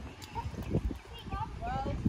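Indistinct voices of people talking, with the walker's footsteps on a paved path as soft, even thuds.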